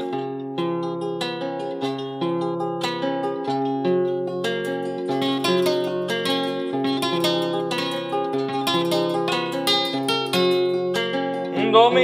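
Acoustic guitar playing a solo introduction: a melody of plucked single notes over a steady repeating bass line. A man's singing voice comes in at the very end.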